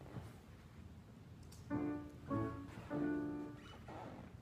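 Three short, steady piano notes in a row, about half a second apart, sounding the key before the singing of the minor tonic and dominant roots.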